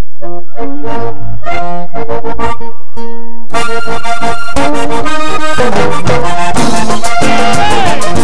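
Vallenato diatonic accordion playing the opening melody of a merengue vallenato alone. About three and a half seconds in, the rest of the band comes in with percussion and the music becomes dense and driving.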